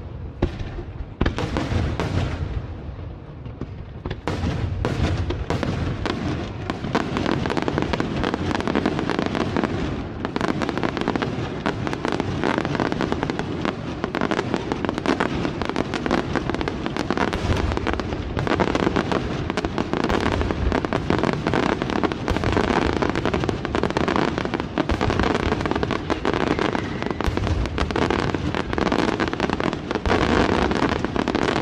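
Aerial firework shells bursting in quick succession, with crackling and booms. After a brief thinner spell a few seconds in, the bursts become a dense, unbroken rapid-fire barrage.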